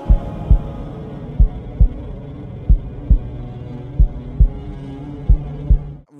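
Heartbeat sound effect: five double thumps (lub-dub), about 1.3 seconds apart, over a steady low hum.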